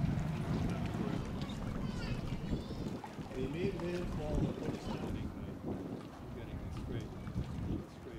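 Wind rumbling on the microphone at a harbourside, with indistinct voices of people talking in the background, loudest about halfway through.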